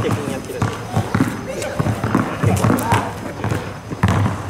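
A basketball being dribbled, bouncing off an asphalt court several times, while people talk over it.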